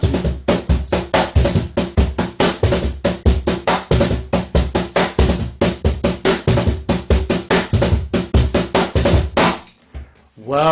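J. Leiva cajón played by hand in a fast six-beat marinera rhythm: deep bass strokes mixed with higher tones from the top edge and a loud slap on beat one, about five to six strokes a second. The playing stops about half a second before the end.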